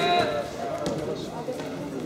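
A man's voice calling out with a held, pitched syllable in the first half-second, then quieter voices in a sports hall with light thuds of wrestlers' feet on the mat.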